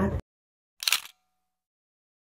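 A voice cut off abruptly, then dead silence broken about a second in by one brief camera-shutter click effect.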